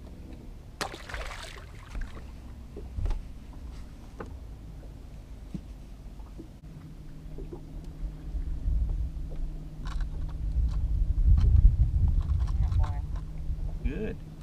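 Outdoor boat ambience on open water: wind rumbling on the microphone, with a brief rushing noise about a second in. A steady low hum comes in about halfway, and the rumble grows louder toward the end.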